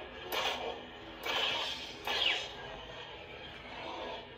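Crimson Dawn Neo Core lightsaber's built-in speaker playing its steady blade hum, with three swing swooshes as the blade is swung in the first half, one of them falling in pitch.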